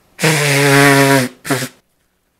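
A person with a cold blowing his nose hard into a tissue: one long blow of about a second, then a short second blow.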